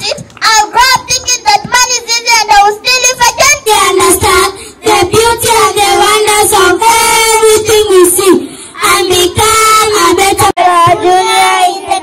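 Young girls singing into handheld microphones, amplified over a loudspeaker, with a brief break about ten and a half seconds in.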